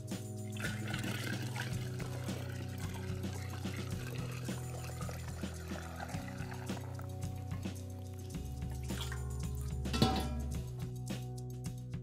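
Liquid dye pouring from an enamel pot through a mesh sieve into a glass jar, the pour dying away a little past the middle, under steady background music.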